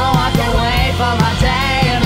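Indie rock band playing live with a steady drum beat: drum kit, electric bass and keyboard.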